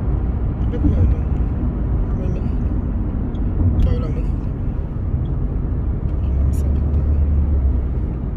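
Steady road noise inside a moving car's cabin: a low rumble of engine and tyres at driving speed.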